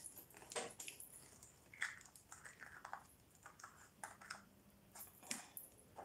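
Faint, scattered clicks and light scrapes of a small plastic cosmetic jar and its lid being handled and closed by hand.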